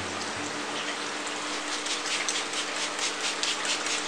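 Steady trickle and splash of water running down the rockwork of an aquaterrarium, fed by its water-split line.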